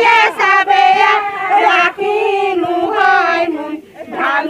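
A group of female voices singing a Bengali wedding song (biyer gīt) together, with a brief break near the end.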